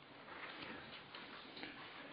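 A pause in speech: faint room tone with faint, irregular light ticks.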